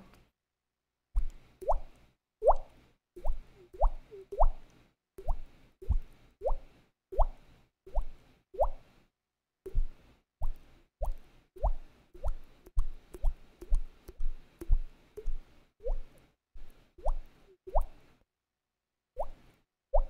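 A person making water-drop sounds with the mouth: a long run of plops, each rising quickly in pitch, about two a second, with short pauses near the middle and near the end.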